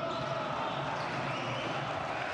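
Basketball arena game sound: steady crowd noise in a large hall, with a ball bouncing on the hardwood court.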